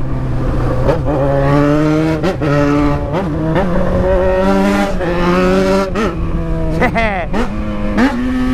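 Yamaha XJ6's 600 cc inline-four engine running while riding, its pitch climbing gradually with several short dips as the throttle is eased off and reopened, the deepest dip near the end.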